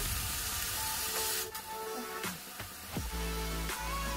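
Background music with sustained tones and a low bass line. Under it, during the first second and a half, the hiss of water poured into hot oily masala in a metal kadhai, which then dies away.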